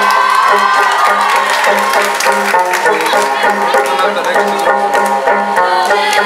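Tibetan folk dance music: plucked strings over a steady beat, with crowd voices and cheering mixed in.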